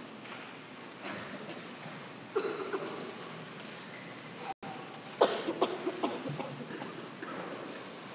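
Shuffling and footsteps of singers changing places on the choir risers, with a cough about two seconds in and a run of sharp knocks and steps about five seconds in, the loudest moment.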